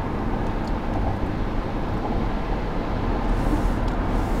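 Car cruising at highway speed, heard from inside the cabin: a steady rumble of road noise.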